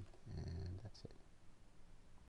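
A man's voice, low and quiet, for about half a second near the start, with light clicks of a stylus on a tablet screen at the start and about a second in.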